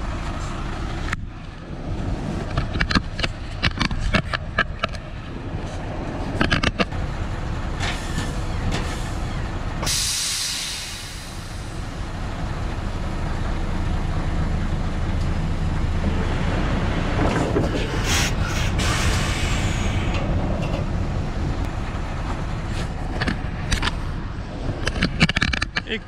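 Semi-truck engine running as the tractor pulls forward to draw out a telescopic trailer's extension, with clicks and knocks in the first few seconds. A loud hiss of compressed air comes about ten seconds in, and shorter air hisses come around eighteen seconds.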